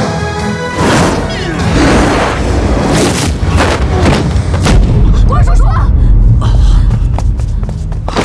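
Film fight sound effects over dramatic action music: several sharp hits in the first half as a fighter is lifted and slammed onto the ring floor, then a heavy low boom that is the loudest part.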